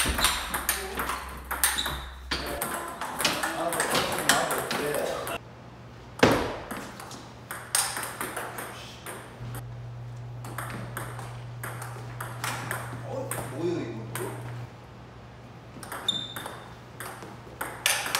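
Table tennis rallies: the plastic ball clicking off the rubber bats and bouncing on the table in quick succession, with voices in between.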